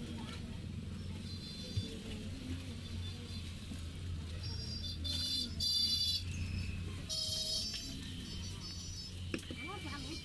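Steady low hum under repeated bursts of high-pitched, rapidly pulsing chirps, loudest about halfway through and again a second later, with a few faint soft knocks.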